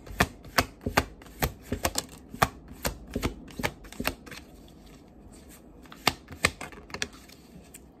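A Light Seers Tarot deck being overhand-shuffled, the cards slapping down onto the pile in the hand in sharp taps, about two to three a second. The taps pause briefly past the middle, then a few more come near the end.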